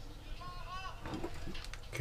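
Faint clicks and light knocks as a soldering iron is lifted off a drone's circuit board and handled on a cluttered workbench, with faint high, wavering voice-like calls in the background.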